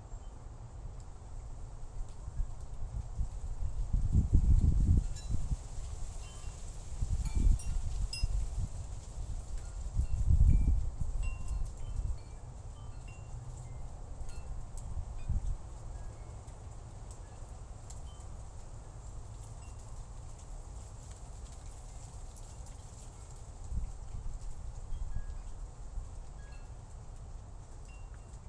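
Wind buffeting an unattended outdoor microphone, with three strong low gusts in the first half and a smaller one later. Faint, scattered high tinkling notes run through it.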